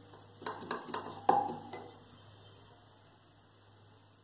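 A wooden spatula knocking against a nonstick frying pan while stirring a crumbly dal filling: three knocks in the first second and a half, the last the loudest and ringing briefly. Then only a faint, steady low hum.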